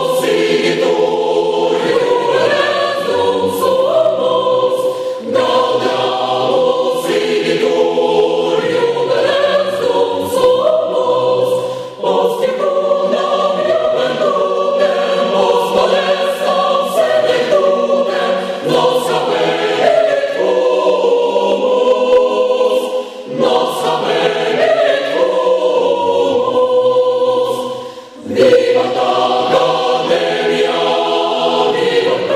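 A group of men and women singing together as a choir into microphones, a song in long sung phrases with short breaks between them.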